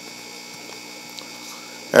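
Steady low electrical hum, typical of mains hum, with a faint tick about a second in.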